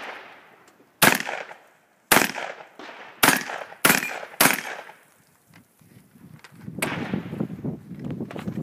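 Five shotgun shots, the first two about a second apart and the last three in quicker succession, each with a trailing echo. A rough scuffling noise starts near the end.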